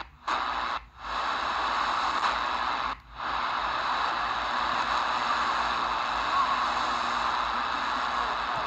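Degen DE1103 shortwave receiver hissing with static on 11780 kHz AM, the station lost in the noise. The Tecsun AN-48X active loop is peaked at its best setting, yet reception is still next to impossible. The hiss drops out briefly three times in the first three seconds.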